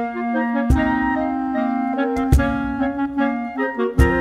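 Several multitracked clarinet parts playing a processional march in harmony, with a few deep cajón strikes marking the beat.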